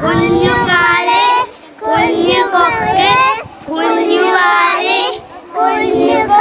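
A group of young schoolchildren singing a Malayalam children's song together, in short phrases with brief breaks between them.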